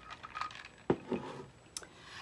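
A single sharp click about a second in, with a fainter click near the end and faint rustling handling noises around it.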